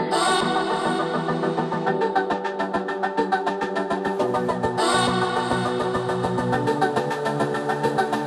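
Background music with a steady beat and sustained chords.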